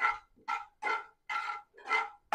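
Steel ladle scraping back and forth across the bottom of a kadai, stirring the tempering of dal and mustard seeds in oil, in short even strokes about two and a half a second.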